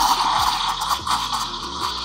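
Espresso machine steam wand hissing steadily as it stretches milk in a stainless steel jug, drawing air in to foam the milk for a cappuccino. Background music with a beat plays under it.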